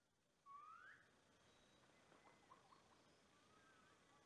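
Near silence outdoors, with faint bird calls: a single rising whistle about half a second in and a few thin chirps later.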